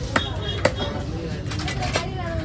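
Heavy fish-cutting knife chopping fish on a wooden log block: two sharp chops in the first second, then a quick run of lighter knocks near the end.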